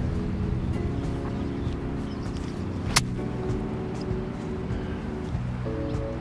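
Background music with steady tones, broken once about halfway through by a single sharp click: a 52-degree wedge striking a golf ball on an approach shot.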